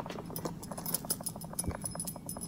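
Handling noise from a camera being shaken by hand: a rapid, irregular rattle of small clicks, with a dull knock near the end.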